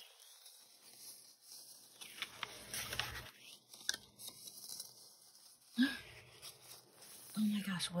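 Paper and card rustling and crinkling as sheets are lifted and leafed through, with scattered small taps, broken by two stretches of near silence.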